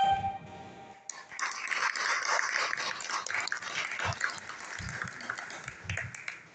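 The end of a live pop song, then audience clapping and cheering from about a second in.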